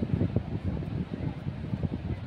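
Wind on the microphone: a low, uneven rumble.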